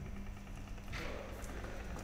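Low steady mechanical hum from a mobile service robot's drive motors and electronics as it sets off across the room, with a brief rustle about a second in.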